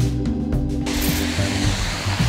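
Background music; about a second in, the steady rushing hiss of a pond fountain spraying water joins it.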